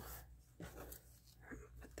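Faint rustle of paper being handled and pressed flat by hand, over a low steady hum.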